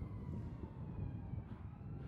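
A faint distant siren, its tone slowly falling in pitch, over a low steady outdoor rumble.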